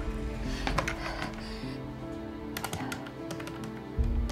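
Clicks of the push buttons on a desk telephone as a number is dialed, in two short runs, over steady background music.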